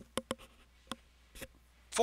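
A few short, faint clicks, irregularly spaced, in a pause between words.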